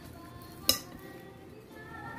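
A wire whisk stirring thick brownie batter in a glass mixing bowl, with one sharp clink of the whisk against the glass less than a second in. Faint music plays in the background.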